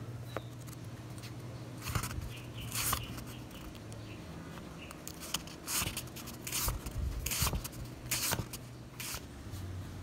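Handling noise: a series of short rustles and scrapes, about seven spread across a few seconds, over a low steady hum.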